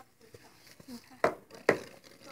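Two sharp knocks about half a second apart, past the middle, with a few faint ticks before them.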